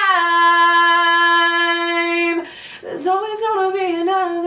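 A young woman singing, holding one long steady note on the word "climb" for a little over two seconds, then a short breath before she goes on into the next line.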